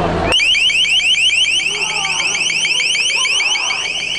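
Police long-range acoustic device (LRAD) sounding its piercing deterrent tone: a rapid train of short rising electronic chirps, about seven a second, that starts suddenly a third of a second in and drowns out the crowd.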